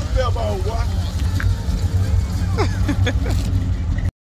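Steady low rumble of a truck engine, with faint voices over it; it cuts off abruptly at the end.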